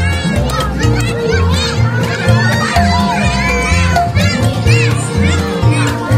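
Music with a steady, repeating bass line plays loudly over a crowd of children shouting and chattering.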